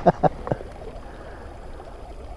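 A man's laughter trails off in the first half second, then the steady rush of a shallow creek running over rocks.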